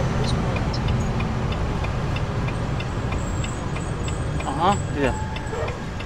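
Semi-truck cab interior while driving: a steady low engine and road rumble, with faint light ticking above it. A brief spoken "yeah" near the end.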